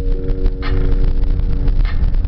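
Music playing inside a moving car: held synth notes over heavy bass, with a sharp beat hit about every 1.2 seconds, mixed with the car's engine and road rumble.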